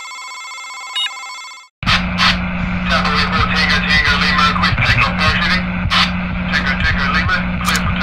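Electronic ringing tone of an intro sound effect, steady with a click about a second in, cutting off just under two seconds in. It is followed by a loud burst of radio-transmission static, full of crackles over a steady low hum.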